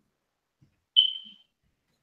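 Silence broken about a second in by a single short, high beep that fades out within half a second.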